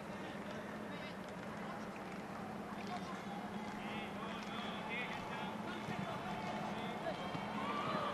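Football stadium ambience with a steady low hum and faint, distant shouting voices from the pitch, clearest a few seconds in.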